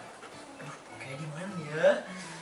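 A person's voice making wordless sounds, rising in pitch and loudest near the end.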